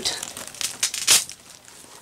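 Rustling of a soft spa bath wrap towel being handled close to the microphone: a string of short rustles and crinkles through the first second or so, quieter near the end.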